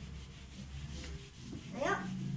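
Felt whiteboard eraser rubbing across a whiteboard, wiping off marker writing, over a steady low hum.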